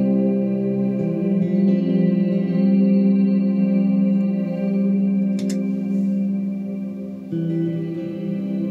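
Electric guitar played through a board of effects pedals, sustained chords ringing out and changing about a second in and again near the end. A short click comes about five and a half seconds in.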